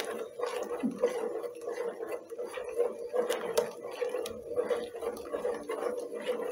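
A spoon stirring hot milk atole in a stainless steel pot, knocking and scraping against the pot's sides and bottom with irregular strokes a few times a second. The pot is stirred constantly so the blended crackers don't stick to the bottom.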